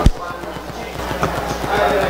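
Handling noise on a desk microphone: one sharp thump, then a quick run of faint, rattling ticks.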